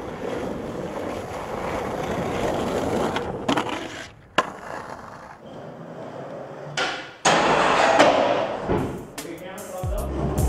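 Skateboard wheels rolling over pavement, a steady grinding noise, broken by a couple of sharp clacks of the board about three and a half to four and a half seconds in; after a quieter stretch the rolling comes back louder in the last few seconds.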